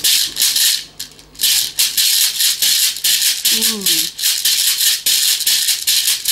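Shekere (djabara), a dried gourd covered in a net of beads, shaken in a quick steady rhythm so the beads rattle against the gourd in crisp strokes, with a brief pause about a second in.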